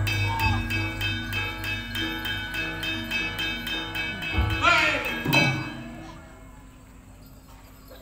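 Javanese gamelan playing: a fast, even run of ringing metallophone strokes over low sustained gong tones. Two loud vocal cries come about four and a half and five and a half seconds in. The music then dies away, leaving it much quieter from about six seconds in.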